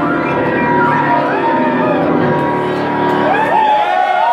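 Grand piano playing, its sustained notes ringing. About three seconds in, audience whoops and cheers start up.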